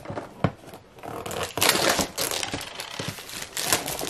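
Clear plastic shrink-wrap being peeled and crumpled off a cardboard toy box, crinkling in irregular bursts that grow louder and busier from about a second in. A single sharp tap about half a second in.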